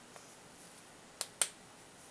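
Two short, sharp clicks about a fifth of a second apart, a little past the middle, over quiet room tone.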